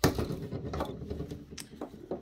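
Handling of the opened plastic housing of a First Alert CO400 carbon monoxide alarm: a sharp plastic clack at the start, then small clicks and light rattles as the unit is picked up and turned in the hands.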